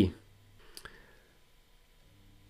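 The tail of a man's spoken word, then a pause of low room tone broken by one faint short click just under a second in.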